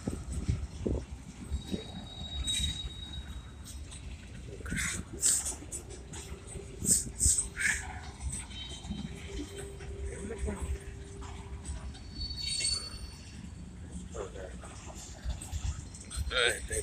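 Freight train rolling slowly past: a steady low rumble of the cars, with several short high squeaks and a held whine in the middle.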